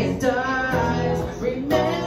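A man singing live while strumming a hollow-body electric guitar.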